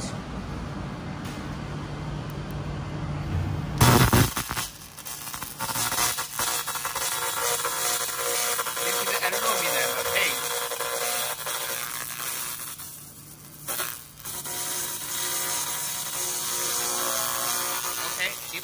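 Handheld 300 W pulsed fiber laser cleaner running at full power, stripping paint from a metal plate with a steady buzzing hiss. It starts about four seconds in after a knock, breaks off briefly near thirteen seconds, then resumes.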